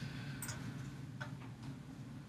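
A few faint clicks of a computer keyboard and mouse: one about half a second in and two more close together a little past one second. A low steady hum runs underneath.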